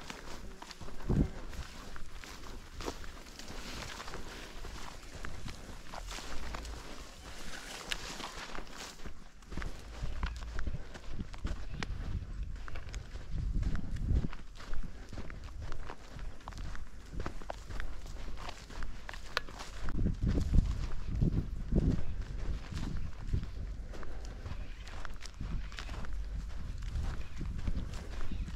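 Footsteps crunching steadily along a dry sandy, grassy path, with a few low rumbles on the microphone around the middle.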